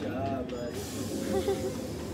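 A steady hiss starts abruptly a little under a second in, over background voices.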